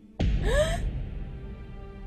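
A woman's short startled gasp, rising in pitch, over a sudden low dramatic music hit that fades away over the next second.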